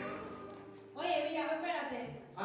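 A woman speaking into a stage microphone, starting about a second in after a quieter moment.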